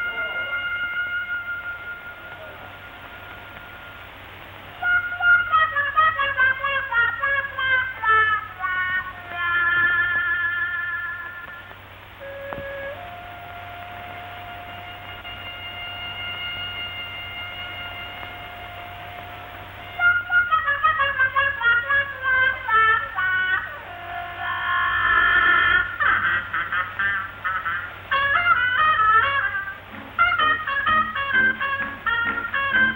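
Solo trumpet playing long held notes broken by fast running passages up and down and quick trills, over a faint steady hum.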